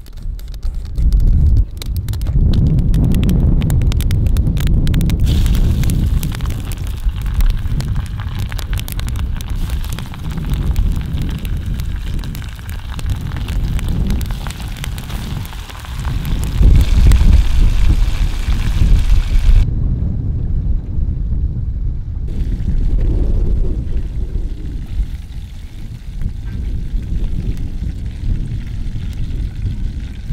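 Wind rumbling heavily on the microphone over the sizzle of oil deep-frying breaded pike fillets in a pan over a campfire. There are sharp crackles in the first few seconds, and the sizzle cuts off abruptly about twenty seconds in.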